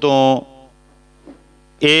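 A man says one short word, then a steady electrical hum carries on alone for about a second and a half before his voice returns near the end.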